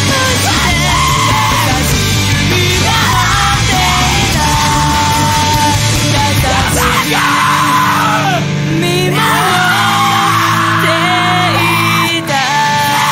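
Chaotic emo band recording: yelled vocals over loud, distorted rock instrumentation. The deepest bass drops out about seven seconds in.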